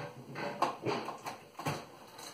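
Plastic hose end of a DeWalt DCV582 wet and dry vacuum knocking and clicking against the vacuum's hose port as it is lined up by hand, about five light irregular knocks over two seconds.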